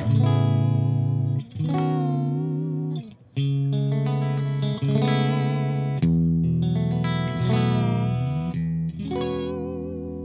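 Duesenberg Caribou semi-hollow electric guitar played through an amp: sustained chords that change every second or two, with a pitch bend near the end.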